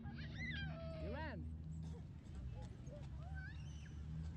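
High-pitched vocal calls sliding up and down in pitch: a long wavering one in the first second and a half, and a short rising one about three seconds in. Under them runs a steady low hum.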